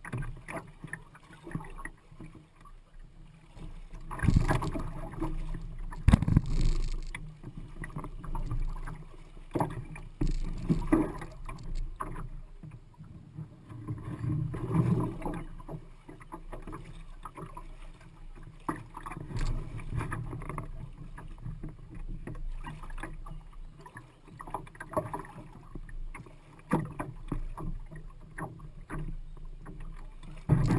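Red canoe moving down a shallow river, water splashing and lapping against its hull, with irregular knocks and thumps on the hull, loudest a few seconds in.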